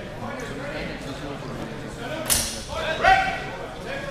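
A single sharp crack about two seconds in, followed at once by a man's loud shout, with other voices echoing in a large hall.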